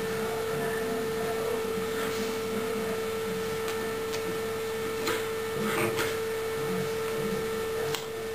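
A steady electrical hum on the recording: one constant mid-pitched tone over a faint hiss, with a couple of soft taps about five and six seconds in.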